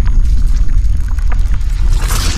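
Intro animation sound effect: a loud, heavy low rumble with scattered crackles and clicks, as a sphere bursts apart on screen.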